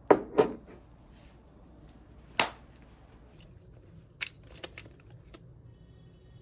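A few sharp knocks and clinks of small hard objects being handled on a desk, such as a glass mug and spoon: two close together at the start, one in the middle, and a quick run of lighter clicks near the end.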